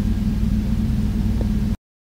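Steady low hum of a room air-conditioning unit running, which cuts off suddenly near the end.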